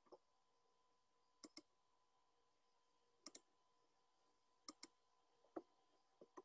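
Faint clicks of a computer mouse over near silence: three quick double clicks about one and a half seconds apart, then a single click near the end.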